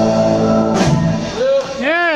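Live rock band of electric guitar, bass, keyboard and drums holding the song's final chord, which stops with a last hit under a second in. Then come a couple of rising-and-falling whoops.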